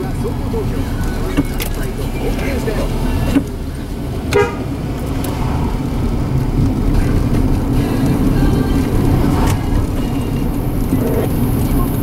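A car being driven slowly, its engine and road noise heard from inside the cabin as a steady low rumble, with a brief pitched sound about four and a half seconds in.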